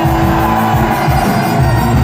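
Loud live punk rock band playing: a driving drum beat under electric guitar.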